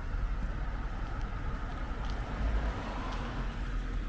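Street ambience: a steady hum of road traffic, with wind rumbling on the microphone.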